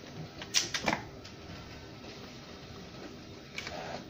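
Battery pack of a Lukas SP 333 E2 hydraulic rescue spreader being unlatched and pulled out of the tool. There is a quick cluster of sharp clicks and knocks about half a second in, then a few lighter clicks near the end.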